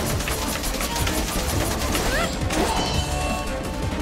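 Anime battle sound effects: a rapid run of weapon clashes and energy impacts over dramatic background music.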